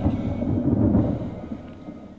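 Low rolling rumble of thunder, a sound effect laid into the TV programme's soundtrack to mark a breakup that came like a bolt from the blue. It fades away over the second half.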